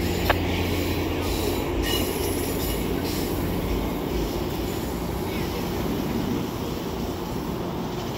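GO Transit bilevel passenger coaches rolling past, with a steady noise of steel wheels on the rails that eases slightly toward the end.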